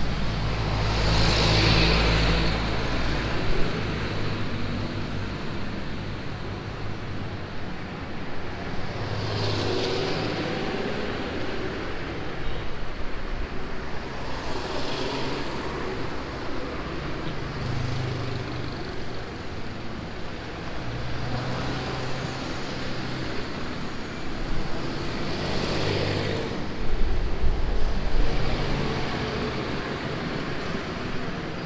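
City road traffic heard from the roadside: a steady wash of engine and tyre noise, with vehicles passing close by every few seconds. A heavier low rumble comes at the start and again near the end.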